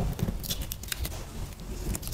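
Protective backing being peeled off the adhesive of a sand-painting sheet, the glue letting go in a run of quick crackling ticks that thicken from about half a second in.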